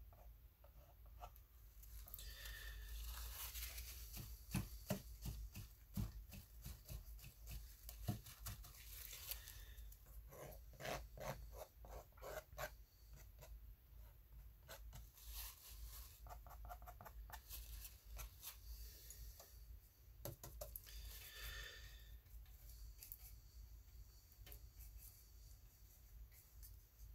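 Paintbrush scrubbing and scraping over rough watercolor paper to work in texture: faint, scratchy strokes that come in bunches, with scattered small clicks and taps between them.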